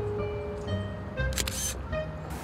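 A digital camera's shutter clicks once, a short sharp snap about one and a half seconds in, over background music with long held notes.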